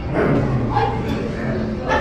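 Indistinct voices of people nearby, with short high-pitched cries much like a child's yelps.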